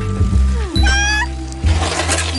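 Animated hen's squawk, a short rising call about a second in, followed by a brief noisy rush, over cartoon background music with a steady bass and a falling slide.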